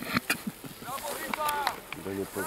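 Footballers' distant calls across the pitch: short high-pitched shouts about a second in, among a few sharp knocks.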